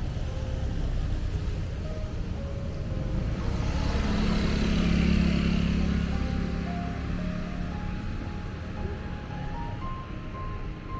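Motor vehicle passing on the street: engine and tyre noise swell to a peak about halfway through, then fade. Background music with a simple melody of short notes plays throughout.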